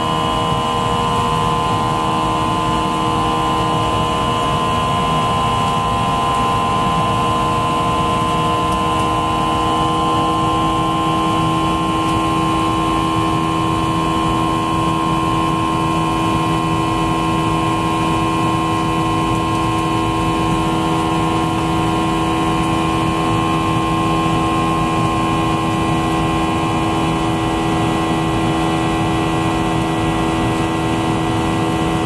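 Boeing 737 jet engines heard from inside the passenger cabin during the climb after takeoff: a loud, steady drone with a steady whine on top. The pitch of the whine shifts slightly about ten seconds in.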